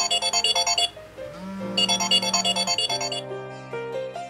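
Smartphone alarm ringing with a rapid, high-pitched repeating melody in two stretches, with a pause of about a second between them, over soft piano music.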